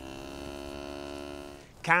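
A cow lowing: one long, steady, low moo that fades away near the end.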